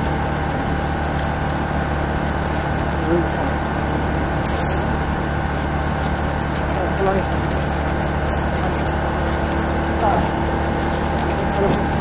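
Honda ST1300 Pan European's V4 engine running at a steady cruising speed on the move, an even, unchanging hum with no gear changes or revving.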